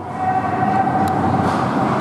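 Steady din of an indoor ice rink during play, with a steady high hum running through it and a single sharp click about a second in.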